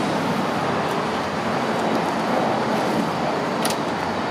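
Steady road traffic noise from vehicles passing on a nearby road. About three-quarters of a second before the end there is one short, sharp click, which fits the car's door latch being opened.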